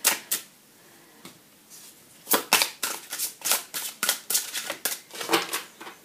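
Deck of oracle cards being shuffled by hand, the cards clacking together in quick sharp strokes. A few strokes, a short pause, then a fast run of about four to five clacks a second.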